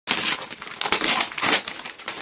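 Kraft wrapping paper on a parcel being torn and crumpled by hand: irregular bursts of ripping and rustling paper.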